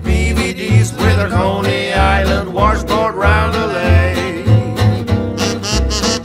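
Small acoustic jazz band playing a 1920s-style novelty tune: voices singing in harmony over a walking double bass, strummed archtop guitar and scraped washboard. The sound grows brighter in the last second.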